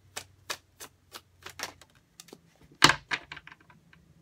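Tarot deck being shuffled by hand: a run of short, uneven card slaps and clicks, with a louder quick clatter about three seconds in.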